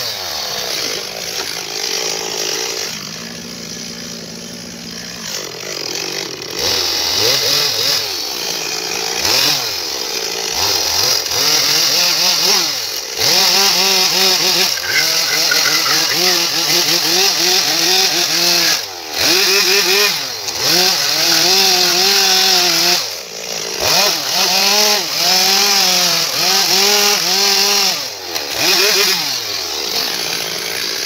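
Two-stroke chainsaw cutting into a log. It runs more steadily for the first few seconds, then is revved up and down again and again as the bar bites into the wood.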